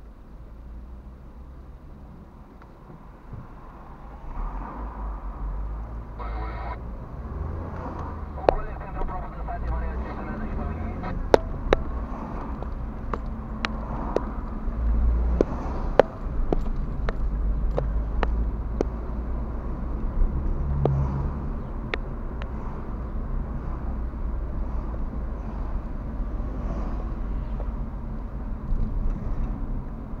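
Car cabin noise picked up by a dashcam: a low engine and road rumble that grows louder about four seconds in as the car moves off, with scattered sharp clicks and ticks from the cabin.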